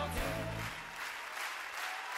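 Audience applauding, with band music under it that stops a little under a second in, leaving the clapping on its own.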